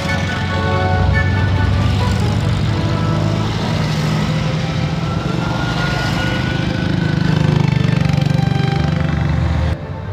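Air-cooled flat-four engines of Volkswagen Type 181 Safari cars running on the road as the convoy drives along, with music underneath. The engine sound grows louder about three-quarters of the way through, then cuts off suddenly near the end.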